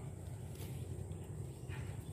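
A low steady rumble with a few faint clicks as a wire cage trap is carried and jostled.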